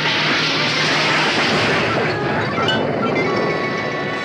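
A torpedo fired from a PT boat's tube: a sudden loud blast of rushing noise that dies away over about two seconds. Sitcom music comes in under it.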